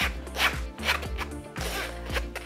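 A spatula scraping mashed potato off the underside of a fine-mesh metal sieve in a series of quick strokes, over background music with a steady bass.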